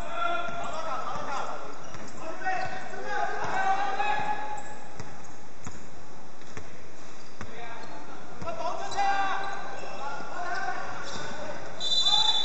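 Basketball dribbled on a hardwood gym floor, each bounce a short thud, with players calling out between them.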